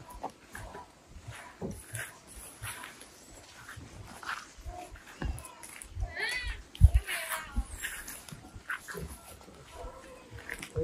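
Footsteps and rustling on a dirt and grass hillside path, with a brief high call that rises and falls a few times about six to seven seconds in.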